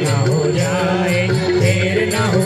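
Indian devotional music: a chanting, singing voice over a steady melodic accompaniment, with small bells or cymbals ticking in time.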